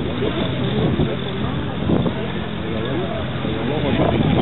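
Antonov An-2's nine-cylinder radial engine running steadily at takeoff power as the biplane lifts off.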